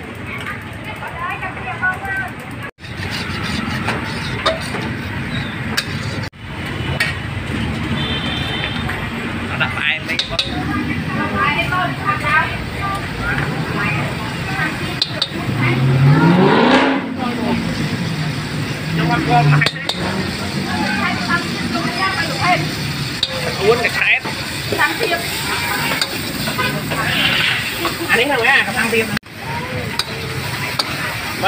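Busy street-food stall sounds: a metal spatula scraping and stirring food sizzling in a steel wok, with voices chattering around it. About halfway through, a vehicle passes, its engine rising and then falling in pitch.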